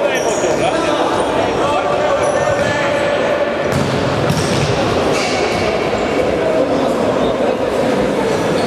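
Futsal play in a reverberant sports hall: players' voices calling out over a steady din, with a couple of sharp knocks of the ball being kicked about four seconds in.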